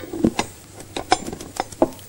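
Sugar poured from a glass bowl into a stainless-steel stand-mixer bowl: a faint pattering with a handful of short, sharp clicks and taps spread through the two seconds.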